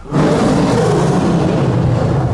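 A lion roaring: one long, deep roar that starts suddenly right after a moment of silence.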